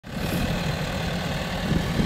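Tractor engine running steadily while powering a tow-behind forage mill that grinds dry corn stalks, making one continuous mechanical drone with a rushing hiss over it.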